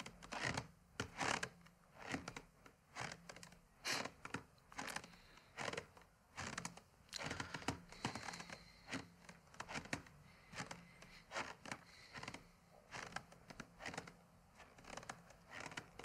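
Faint, irregular small clicks and light knocks, one or two a second, from a rifle being handled while its main parts are being identified.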